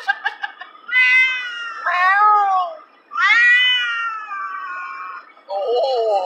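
Domestic cat shut in a pet carrier yowling in protest at the car ride: four long, drawn-out meows, the third the longest at about two seconds and the last lower in pitch, after a few quick ticks at the start.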